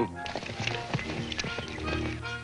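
Horse hooves clip-clopping in a run of irregular clops, over background music.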